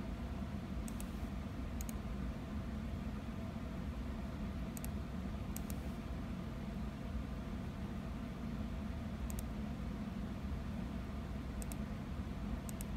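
Steady low hum of a running computer's cooling fans, with a few light, sharp mouse clicks scattered through it as the setup screen is clicked through.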